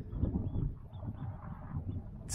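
Wind buffeting the microphone outdoors, an uneven low rumble that rises and falls.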